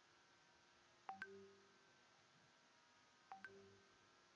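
Two identical short electronic beeps about two seconds apart, each a quick double click followed by a brief low tone, faint against room hum.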